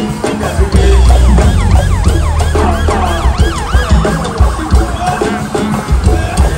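Live go-go band music with heavy bass and drums. From about a second in until near the end, a siren-like wail of quick repeated up-and-down swoops rides over the band.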